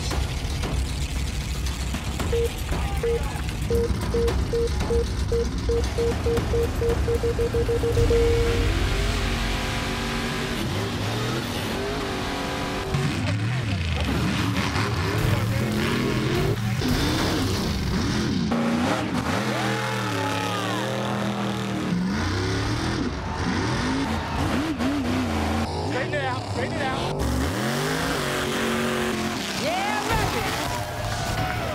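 Big-block V8 mega truck engines racing: a low rumble at the line with a run of beeps that come faster and faster over the first several seconds, then the engines revving up and down again and again as the trucks run the dirt course.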